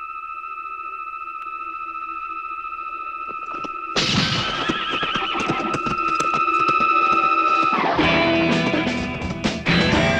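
A horse whinnies loudly in a film soundtrack, starting suddenly about four seconds in over a held high note in the score. Around eight seconds in, louder music with a beat comes in.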